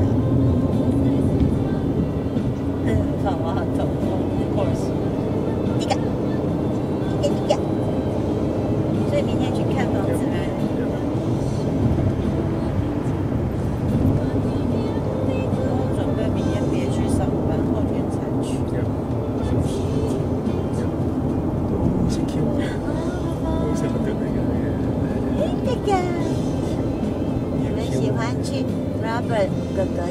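Steady road and engine noise inside the cabin of a moving car, with voices and music under it.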